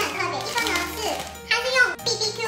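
Talking voice over background music with steady held low notes.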